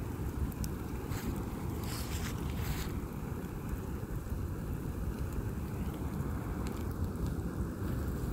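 A reclining loveseat burning in a large open fire: a steady low rush of flames and wind on the microphone, with a few bursts of crackling and hissing between one and three seconds in.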